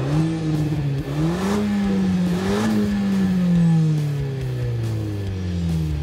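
Renault Mégane GT's 205 hp 1.6-litre turbo four-cylinder engine revving up, with a break in the revs about a second in, climbing again. Over the last three seconds its revs fall slowly and steadily as the car slows.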